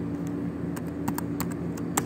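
Laptop keyboard being typed on: a quick run of about nine keystrokes in the second half, over a steady low hum.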